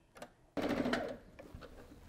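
An Eversewn electric sewing machine running a short burst of stitching, sewing down a seam a quarter inch from the edge. The whir starts about half a second in and fades out after well under a second.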